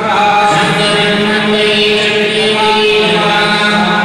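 Hindu priests chanting mantras together in unison, male voices on long, steady held notes that shift pitch now and then.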